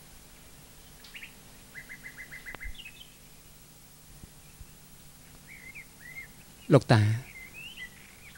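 Small birds calling in the background: a quick run of about seven short chirps about two seconds in, then a few short rising-and-falling calls a little before the end.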